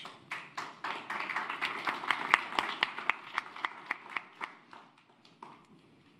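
Audience applauding: a short round of clapping from a small crowd in a hall, with one or two louder clappers standing out, dying away about four and a half seconds in.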